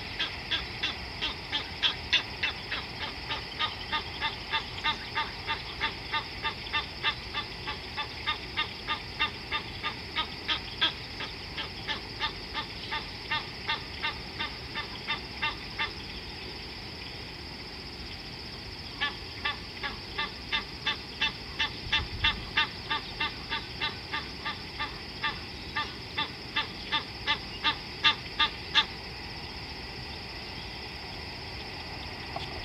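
A bird calling in a long series of evenly spaced, rapid call notes, about two to three a second, breaking off for a few seconds past the middle and then starting again. A steady high hiss runs underneath.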